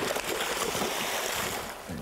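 Hooked tarpon thrashing at the surface beside the boat: a steady rush of splashing water that eases slightly just before the end.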